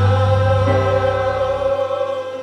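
Violin holding a long, steady note over a sustained keyboard chord; the chord's low bass drops out near the end.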